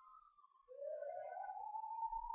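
A faint electronic tone that glides upward and then holds a steady pitch, starting a little under a second in: a sound effect of the kind laid under a slide transition.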